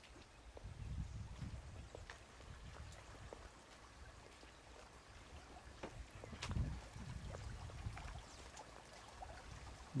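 Faint outdoor ambience: low rumbling on the microphone that swells twice, with scattered small clicks and rustles.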